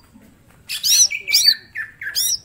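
Caged male green leafbird (cucak ijo) singing: under a second in, it breaks into a fast run of sharp, arched whistled notes, about five in just over a second.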